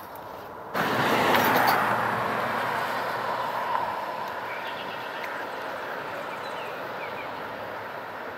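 Rushing noise of a passing road vehicle. It starts abruptly about a second in, is loudest over the next second and fades slowly through the rest.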